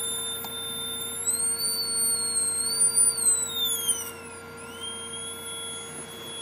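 High-pitched whine from a flyback-transformer high-voltage supply. About a second in its pitch steps up, holds, then slides down and jumps back to a steady tone as the drive frequency, which sets the output, is turned. A fainter steady hum lies underneath.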